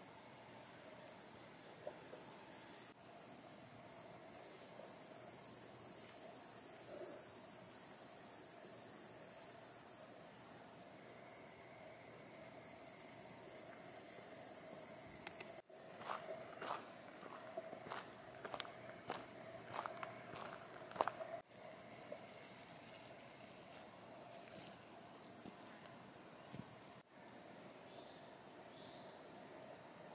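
Insects calling in a steady high-pitched drone, with an evenly pulsing chirp beneath it. A handful of scattered light taps come through about halfway.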